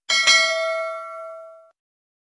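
A bright bell-like ding with several ringing overtones, struck twice in quick succession right at the start, then fading away over about a second and a half.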